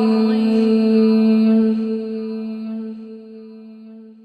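A single long chanted vocal note, held steady in pitch and fading away over the second half.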